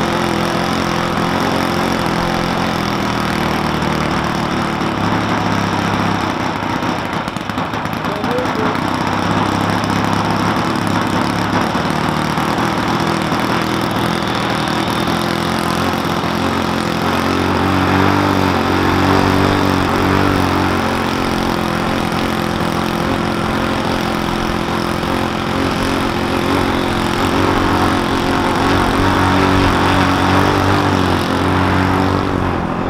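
OS-91 four-stroke glow engine with a 14-inch propeller on a large control-line model airplane, held on the ground and running at a steady low speed ahead of launch. The engine speeds up slightly a little past halfway and again near the end.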